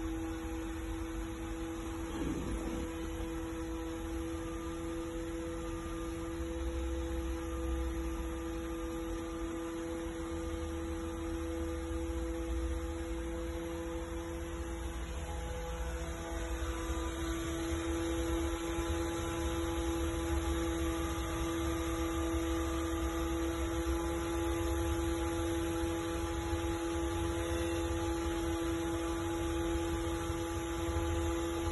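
A steady hum with a low rumble underneath in the cab of a school bus whose engine is switched off and ignition on, during a one-minute air brake leak test. The hum grows slightly louder and fuller in the second half.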